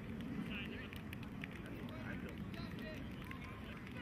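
Outdoor field ambience: a steady low rumble of wind on the microphone, with faint distant voices of players calling out.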